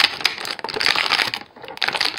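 Clear plastic blister packaging of an action figure crinkling and crackling with many small clicks as the figure is pushed out of its tray, easing off briefly about a second and a half in, then starting again.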